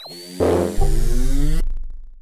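Synthesized logo sting: a rising sweep levels off into a high tone, then a chord hits about half a second in with a deep bass joining just after. It cuts off after about a second and a half and fades away.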